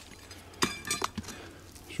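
Stone clinking on stone: a few sharp clicks, a cluster about half a second in and another about a second in, as a chunk of quartz is knocked against rock.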